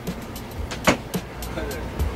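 Steady low rumble of a tour bus heard from inside the bus, with a single sharp click about a second in.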